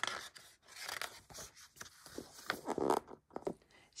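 Paper rustling and scraping as a picture book's page is turned by hand, in several uneven swishes with a few small clicks.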